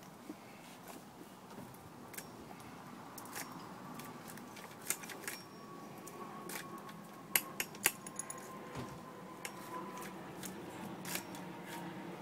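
Light metallic clicks and rattles of a chainsaw chain being handled and seated in the groove of a Husqvarna guide bar during reassembly, with a few sharper clicks a little past the middle.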